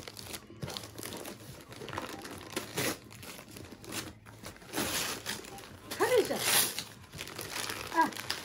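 Gift-wrapping paper crinkling and tearing as a present is unwrapped by hand, with a few sharper rips among the rustling.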